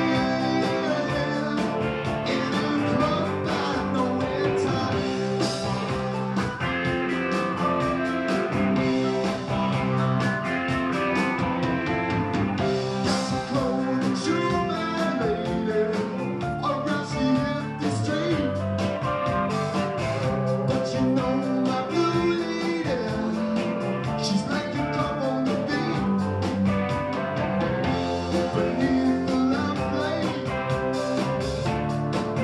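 Live rock band playing a song, with electric guitar, drums and singing.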